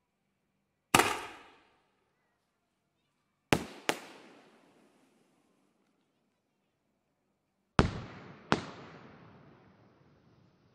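Aerial firework shells bursting: five sharp bangs, each trailing off in a rolling echo. One comes about a second in, a close pair follows around three and a half seconds, and a second pair comes near the end.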